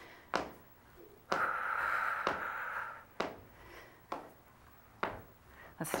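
Quiet movement sounds of someone exercising on a chair: a string of sharp clicks about once a second, with a breathy hiss lasting nearly two seconds about a second in.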